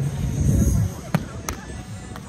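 Two sharp smacks of a volleyball being hit, about a third of a second apart, after a low rumble in the first second.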